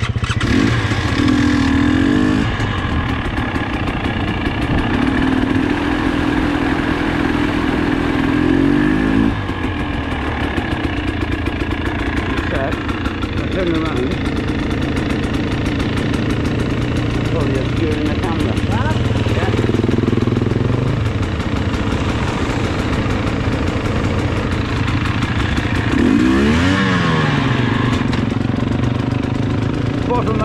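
Trail motorcycle's engine running on the move, its pitch shifting with throttle and gear changes, with a clear dip and rise about 26 seconds in; it is running smoothly.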